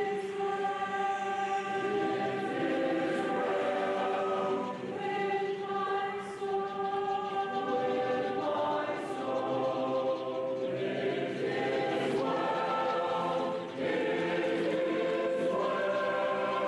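Choral music: a choir singing slow, sustained chords that change every second or two.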